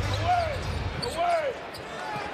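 Basketball arena sound during live play: crowd noise, with two short rising-and-falling squeaks about a second apart.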